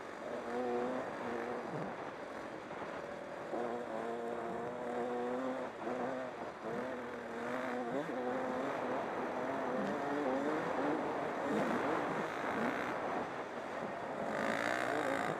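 Dirt bike engines, the rider's own Honda CR125 two-stroke and a Yamaha YZ450F riding close by, revving on a trail ride, their pitch rising and falling repeatedly with throttle and gear changes. A steady rush of wind noise lies under the engines on the helmet camera.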